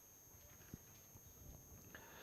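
Near silence: room tone with a faint steady electronic hiss.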